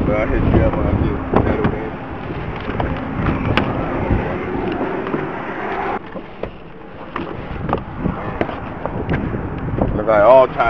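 Roadside traffic and wind noise on a body-worn microphone, with scattered knocks and rustling from the camera moving. About six seconds in it turns quieter and more muffled, inside the car's cabin.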